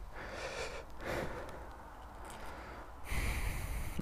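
Faint breathing and rustling close to the microphone, with a louder hiss and rumble near the end.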